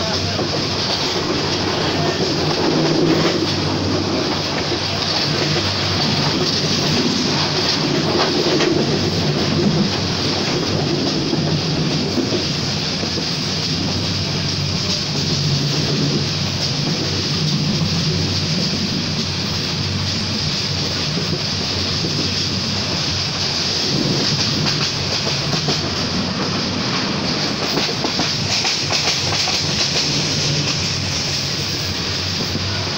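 Kurigram Express passenger train running at speed, heard from inside a carriage by the window: steady running noise of the wheels on the track.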